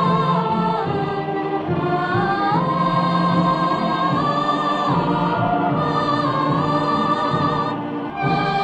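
Music: a choir singing long held notes that move slowly from pitch to pitch.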